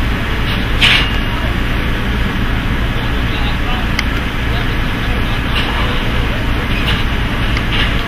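Steady low engine rumble mixed with indistinct crew voices, with a few short clanks as metal stage truss is loaded into a semi-trailer.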